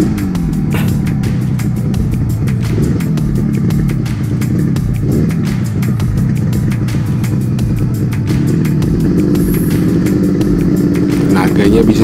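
Air-cooled two-stroke parallel-twin engine of a 1974 Yamaha RD350 running at low speed as the bike slows and rolls along, its pitch falling at first and shifting a few times, under background music with a steady beat.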